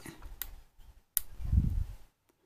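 Push buttons on a Sigelei 213 box mod clicking as they are pressed: a faint click, then a sharper one about a second in, followed by a low rumble of the mod being handled.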